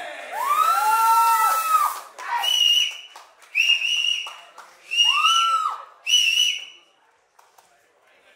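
Spectators whistling loudly: about five shrill whistles that rise and fall in pitch, the first long and lower, then four short, high ones, dying away near the end.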